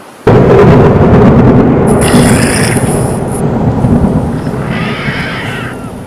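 A loud rumbling sound effect that starts suddenly about a quarter-second in and fades slowly over the following seconds.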